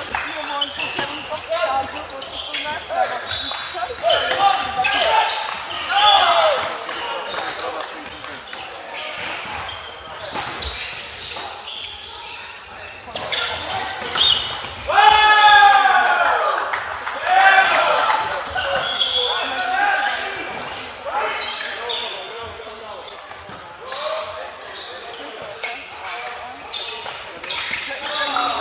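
Indoor volleyball game: the ball is struck and bounces repeatedly, sharp smacks scattered through, and players shout calls, loudest about halfway through, echoing in the hall.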